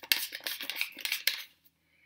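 Clicks and rattles from a refillable pump bottle of cleansing gel being handled, a quick run lasting about a second and a half.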